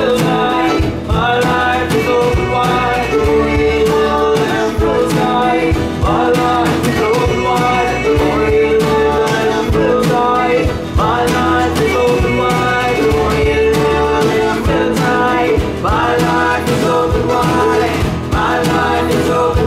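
Live folk-rock band playing: guitars and a drum, with several voices singing together in sustained phrases that begin about every five seconds.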